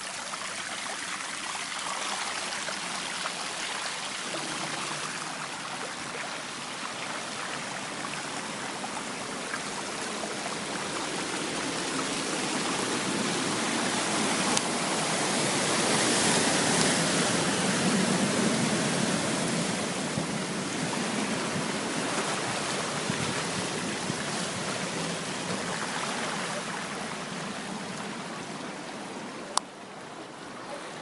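Floodwater running through a street flooded by a cloudburst: a steady rush of water that swells louder in the middle, then eases off. Two brief clicks come through, one about halfway and one near the end.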